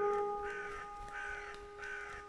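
A crow cawing about four times at an even pace, over a steady held musical tone.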